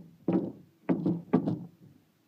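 Three thunks as a wooden attic scuttle-hole cover is pushed up and knocked loose from its frame, the second and third close together.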